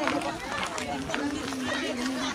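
Background voices of several people talking at moderate level, with a few short clicks of handling noise.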